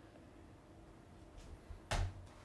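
Faint hum and hiss of an open microphone in a quiet hall, with one short sharp click or knock just before the end.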